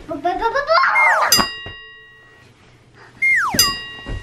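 Cartoon-style sound effects: a rising run of pitched notes, then a falling glide that ends in a bright ding, which rings on for about a second. A second falling glide and ding comes near the end.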